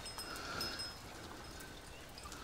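Faint outdoor ambience between speech: a quiet, even wash of background noise with a few faint, short high-pitched notes.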